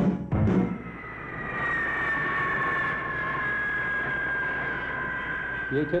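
The twin turbofan engines of an A-10 Thunderbolt II jet: a steady rushing noise with a high whine whose pitch falls slowly over several seconds. It opens on the last drum strikes of orchestral music with timpani.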